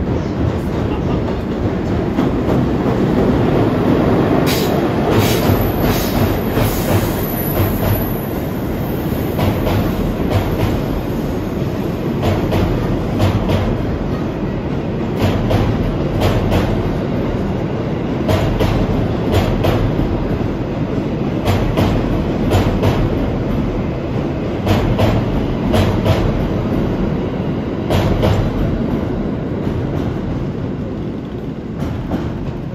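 An EF81 electric locomotive passes at speed, hauling a towed 651 series express train. There is a steady rumble, and the wheels clack over the rail joints again and again as the cars go by.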